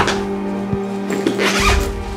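A backpack zipper pulled open in a short rasp about a second in, over background music with a steady low drone and a slow bass pulse.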